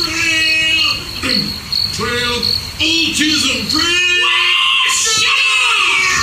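A man's voice calling out in drawn-out, high-pitched cries with no clear words, over a steady high chirping that pulses about three times a second.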